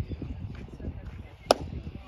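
A pitched baseball popping into the catcher's leather mitt: one sharp crack about one and a half seconds in, over a low background rumble.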